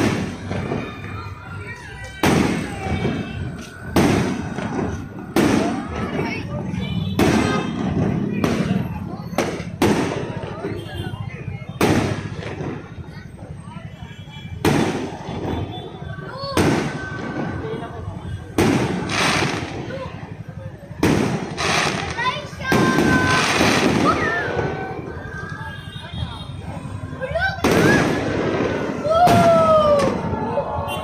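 Aerial fireworks shells bursting one after another in the night sky, a sharp bang about every one to two seconds.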